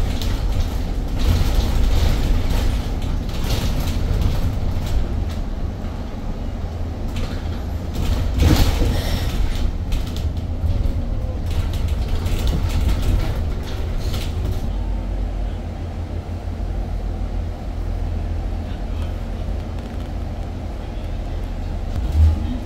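Cabin noise of an Edison Motors Smart 093 electric city bus driving: a steady low road rumble with rattles and knocks from the body and fittings, and a louder knock about eight and a half seconds in.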